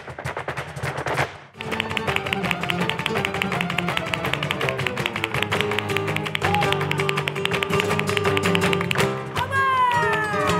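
Flamenco music driven by rapid, evenly repeating percussive taps, with a short break about a second and a half in. After the break come held notes, and near the end sliding notes fall in pitch.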